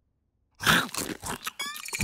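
Cartoon sound effect of a bite into a crunchy cookie followed by crunching chews, starting about half a second in after a moment of silence.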